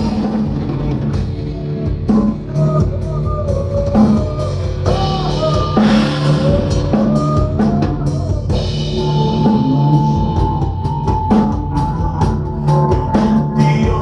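A heavy metal band playing live: pounding drum kit with distorted electric guitars and bass guitar. A high melody line bends up and down through the first half, then holds a long note.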